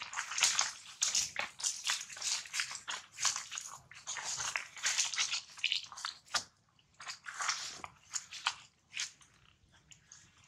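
Irregular crackling and rustling of dry leaves and grass in quick short bursts, thinning out after about six seconds to a few scattered crackles; no monkey cry is heard.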